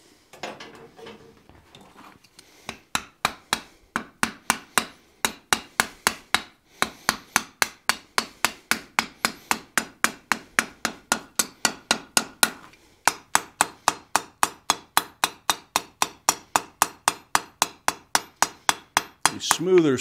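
Hand hammer striking the hot end of a steel bar on the anvil in a fast, even rhythm of about three to four ringing blows a second, upsetting the end of a forged ball to close a divot. The blows start after a couple of seconds of faint scraping and pause briefly twice.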